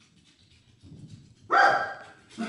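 A small mixed-breed dog (Lhasa Apso, Shih Tzu and Poodle cross) barks once, a single sharp bark about one and a half seconds in.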